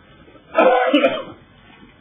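A man coughs to clear his throat: one short, throaty burst about half a second in, lasting under a second.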